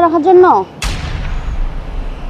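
A woman's voice trails off, then a sudden loud boom hits and dies away in a long, deep rumble, like a dramatic impact sound effect.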